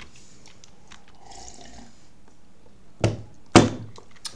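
A few faint clicks, then two loud, sharp thunks from computer keyboard keys about half a second apart near the end.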